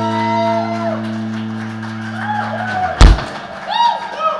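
A live rock band's final chord on electric guitars and bass rings out and cuts off about two and a half seconds in. A single loud thump follows about three seconds in, then a few scattered shouts.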